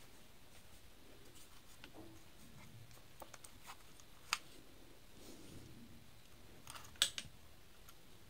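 Scattered light clicks and taps of a plastic switch-and-socket board and its wires being handled, with a sharper click about four seconds in and a louder double click near the end.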